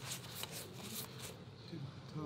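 Paper napkin rubbed over the plate of a Waffleye waffle iron to spread a drizzle of oil, a few quick scratchy wiping strokes in the first second or so, then quieter.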